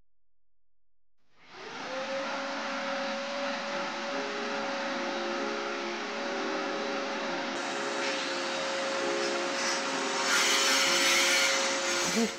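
Steady whirring motor noise with a constant whine, like a running appliance. It starts suddenly about a second and a half in and gets louder near the end.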